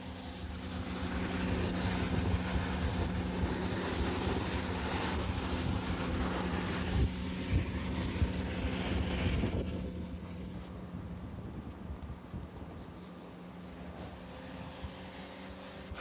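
Hydrovac truck's vacuum running at maximum power, its dig tube sucking up loose soil with no water: a steady hum under a rushing air noise. The rush eases off about ten seconds in, with a few sharp knocks shortly before.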